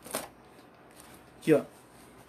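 A brief rustle just after the start as the finished sewn fabric piece is picked up and handled.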